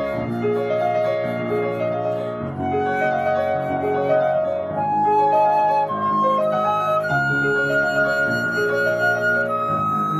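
A concert flute plays a long, sustained melodic line over cascading piano figures. The flute climbs stepwise and holds a long high note from about seven seconds in.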